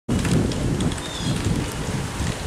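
Wind rumbling on the microphone with rustling handling noise as the camera is carried, a steady noisy sound heaviest in the low end.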